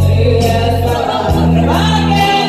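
Two women singing through microphones over a karaoke backing track with a strong bass line that changes note about halfway through.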